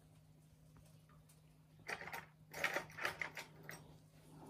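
Nearly quiet for the first half, then a quick run of small clicks and rustles lasting about two seconds: fishing tackle being handled on a tabletop.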